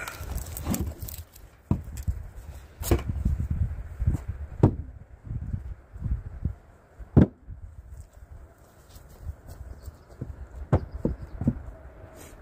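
Split firewood pieces knocking against each other as they are handled and stacked: irregular sharp wooden knocks every second or two, the loudest about seven seconds in, over a low rumble.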